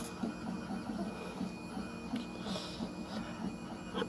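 FLSUN i3-clone 3D printer running: a low mechanical hum made of short tones that shift in pitch every fraction of a second, with a click at the very start.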